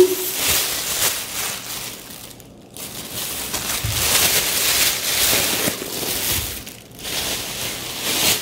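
Thin clear plastic produce bag crinkling and rustling as it is handled and opened, with brief pauses about two and a half and seven seconds in.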